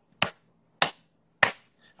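Three sharp hand claps, evenly spaced a little over half a second apart.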